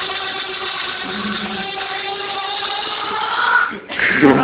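UFO balloon deflating as it flies, air escaping through its nozzle in a steady buzzing tone that rises slightly near the end and stops suddenly just before the laughter.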